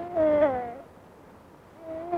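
Infant crying and fussing while being rocked in a basket cradle: a high wailing cry that falls in pitch and breaks off within the first second, then another cry begins near the end.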